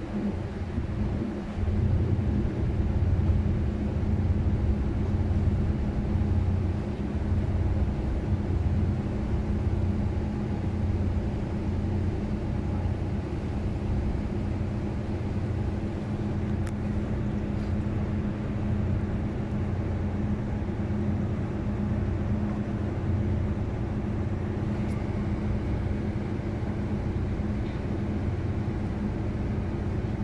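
Marine diesel engines running with a steady low drone and a pulsing throb beneath it, a little louder in the first third.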